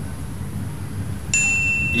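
A clear, high ding starts abruptly about two-thirds of the way in and rings on as a steady tone, like an edited-in comic 'idea' sound effect, over a low background rumble.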